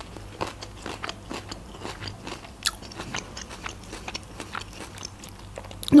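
Close-miked chewing of a mouthful of food, most likely pickled ginger: a steady run of small, irregular wet clicks and crunches.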